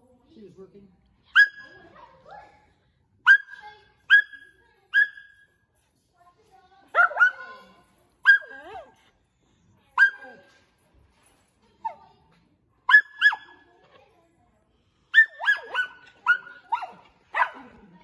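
A dog barking repeatedly in short, sharp, high-pitched barks, singly and in pairs, then in a quicker run of barks near the end.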